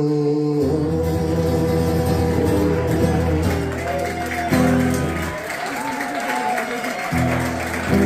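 Acoustic guitar strumming and letting chords ring at the close of a song, with scattered applause from the audience.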